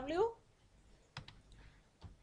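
A few faint computer-keyboard keystrokes, two sharp clicks about a second in, following the end of a spoken word.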